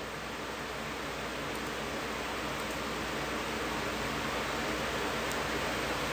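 Steady hiss of microphone background noise that slowly grows louder, with a few faint clicks.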